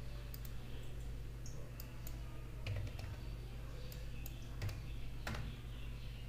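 A handful of scattered computer keyboard and mouse clicks, the sharpest a little after five seconds, over a steady low electrical hum.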